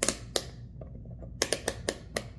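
Rotary selector dial of an AstroAI AM33D digital multimeter being turned toward the 10 A setting, its detents clicking. There are about three clicks near the start, then a quicker run of about five clicks from about a second and a half in.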